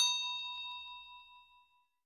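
A single bell-ding sound effect for a notification bell being pressed: struck once, then ringing out with a clear tone that fades away over nearly two seconds.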